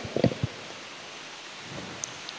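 A few short low knocks and rustles in the first half second, then a steady hiss of room noise.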